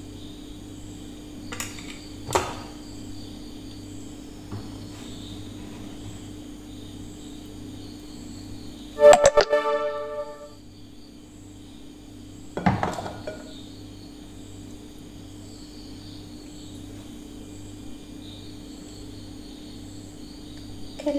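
Faint background keyboard music with a steady pulse. About nine seconds in there is a loud ringing metallic clatter, a steel pan and spoon knocking against the dish as chocolate mix is poured, with single knocks early on and again near thirteen seconds.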